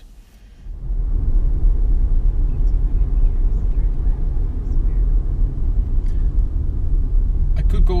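Steady low road and tyre rumble inside the cabin of a moving Nissan Leaf, starting suddenly about a second in. There is no engine note from the electric car.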